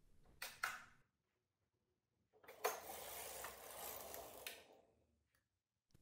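Silver Reed knitting machine carriage pushed across the needle bed to knit a full row with all needles back in work: a faint, even sliding rasp lasting about two seconds, after two short clicks near the start.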